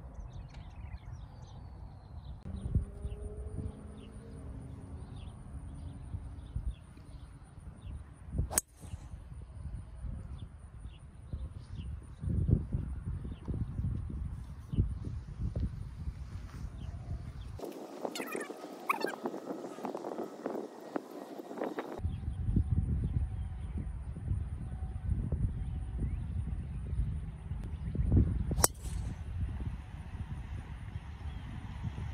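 Wind rumbling on the microphone on an open golf course, with faint bird calls. A sharp click about a third of the way in, and near the end the crisp crack of a driver striking a golf ball off the tee.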